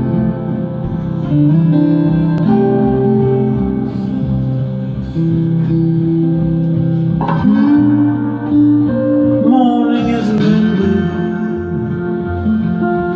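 Steel-string acoustic guitar played live, with sustained notes ringing over a steady low accompaniment.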